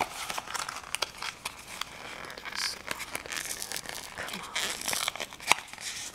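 Fingers working a small paperboard cosmetics box and its wrapping: irregular crinkling, scraping and small tearing sounds as the product is pried out of the packaging, with one sharper snap about five and a half seconds in.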